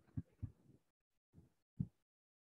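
Faint, short low thumps, four in two seconds, the last the loudest, with near silence between.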